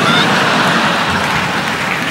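Theatre audience applauding and laughing, a steady loud patter that eases near the end.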